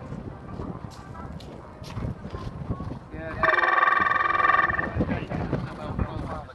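A single loud buzzer tone, steady and about a second and a half long, starting and stopping abruptly about three seconds in. At a show-jumping round it is the judges' signal for the rider to start. Quieter voices and hoofbeats sound beneath it.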